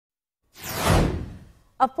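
News-broadcast graphics whoosh sound effect: a rushing sweep that swells to a peak about a second in, with a falling hiss on top, and then fades away. A newscaster's voice starts just at the end.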